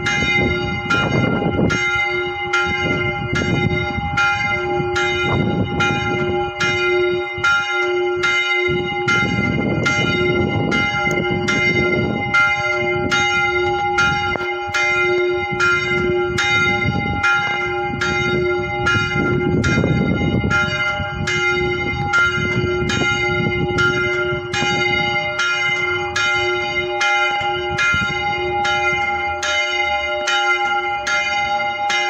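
Small church bell, St. Melchior Grodziecki, about 200–300 kg, swung and ringing full circle, its clapper striking evenly about one and a half times a second, each stroke ringing on into the next.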